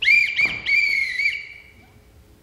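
A whistle blown as a summoning signal call: two short notes, then a longer wavering one that fades out about a second and a half in.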